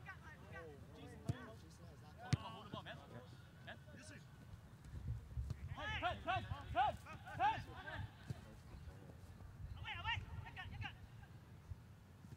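Soccer players shouting to each other across a grass field, in two bursts about six and ten seconds in. A single sharp knock comes about two seconds in.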